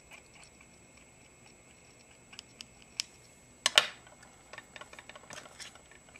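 Quiet tabletop handling while card-making: scattered small clicks and ticks, with one brief louder clatter a little past halfway as a marker and clear stamp are put down on the craft mat.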